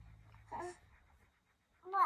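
A young child's short, high-pitched coos: a brief one about half a second in, then a louder one starting near the end.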